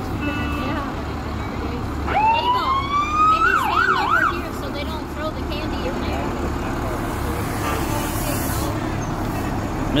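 Fire truck siren: a rising wail about two seconds in that breaks into a few quick up-and-down yelps and cuts off, over the low, steady running of the parade trucks' engines.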